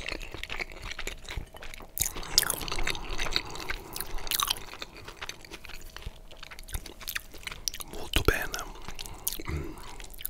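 Close-miked wet chewing and slurping of cheesy spaghetti bolognese, with many short mouth clicks.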